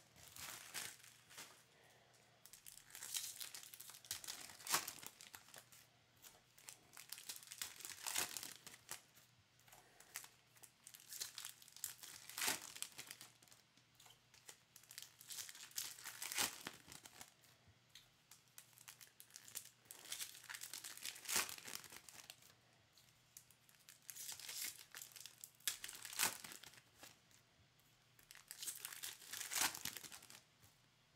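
Foil wrappers of baseball card packs being torn open and crinkled by hand, in short bursts every three to four seconds, with quieter card handling in between.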